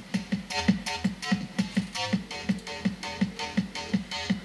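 Electronic music with a steady beat and bass notes playing through a KRK Rokit 8 studio monitor, a sign that its repaired amplifier and woofer work again.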